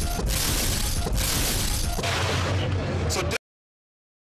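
Promo transition sound effects: a run of loud, rushing, shattering hits, about one a second, over a deep bass rumble. They cut off abruptly into dead silence about three and a half seconds in.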